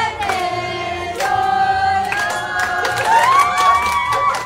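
A group of young voices singing a birthday song together in held notes, with hand clapping.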